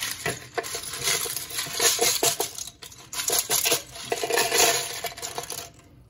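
Wet LEGO bricks clattering into the plastic basket of a salad spinner, a dense run of small plastic knocks and rattles. There is a short pause about three seconds in, and the sound stops just before the end.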